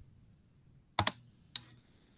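Computer keyboard keys clicking: a quick pair of sharp clicks about a second in, then one more about half a second later.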